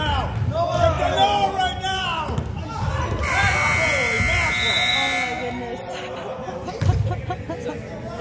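Gym scoreboard buzzer sounding a steady electronic tone for about two seconds, a few seconds in, as the game clock runs out. Players shout before it, and a basketball bounces once near the end.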